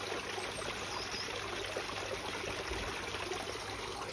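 Water trickling steadily into a koi pond.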